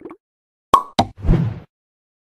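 Animated end-card sound effects: two sharp pops about a quarter second apart, a little under a second in, followed by a short rushing burst lasting under half a second.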